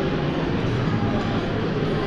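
Steady hubbub of a busy buffet restaurant: many diners' voices blending into a constant murmur in a large marble-floored hall.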